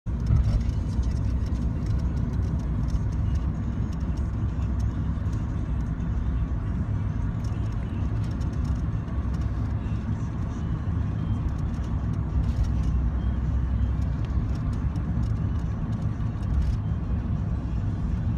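Car running, heard from inside the cabin: a steady low rumble of engine and road noise with occasional faint clicks.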